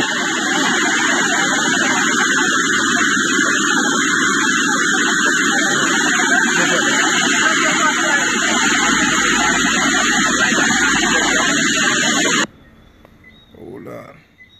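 Steady, loud roar of a muddy flash-flood torrent rushing past. It cuts off abruptly about twelve seconds in.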